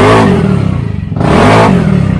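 Yamaha NMAX scooter engine, tuned to 180cc with a racing CVT set-up, revved in two quick throttle blips while the scooter stands still: one blip at the start and a second, rising and falling, about a second and a half in. This is the first test of the newly fitted setup.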